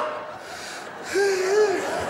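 A man's muffled, wordless vocal noise made through a cupped fist: a wavering hummed tone starting about a second in and lasting under a second. It imitates a post-office clerk's garbled, unintelligible voice over the counter microphone.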